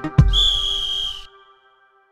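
A referee's whistle blown once: one shrill, steady blast about a second long, just after a short thump. A held music chord fades away under it.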